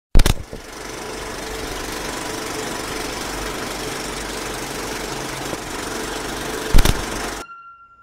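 Film projector sound effect: a sharp loud click, then a steady mechanical clatter for about six seconds, a second loud clack near the end, and an abrupt stop.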